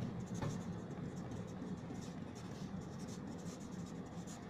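Felt-tip marker writing on a board: a run of short pen strokes, one after another, as a word is written out.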